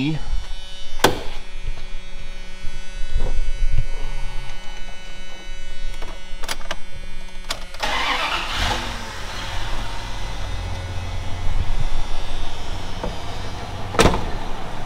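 A 1991 Dodge Ram's 318 V8 with throttle-body injection starting on the key about eight seconds in, catching quickly and settling into a steady idle after a fresh tune-up. Before it, a steady electric buzz and a few sharp clicks.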